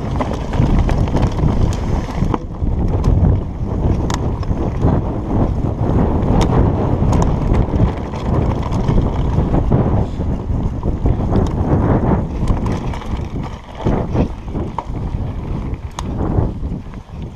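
Heavy wind buffeting on the microphone as a Trek Slash 8 full-suspension mountain bike descends a rocky trail, with scattered sharp clicks and rattles from the bike and tyres over stones.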